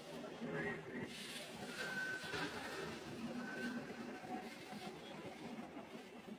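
Indistinct background voices of people talking, faint and unintelligible, like the general chatter of a busy market.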